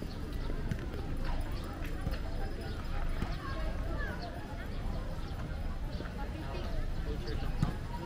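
Footsteps of someone walking on a dirt path and grass, about two steps a second, with people's voices in the background.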